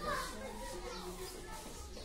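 Faint children's voices in the background, with no clear words.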